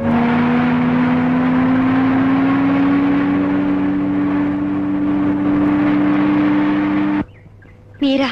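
Jeep engine running as the vehicle drives along, its pitch rising slowly and steadily; the sound cuts off suddenly about seven seconds in.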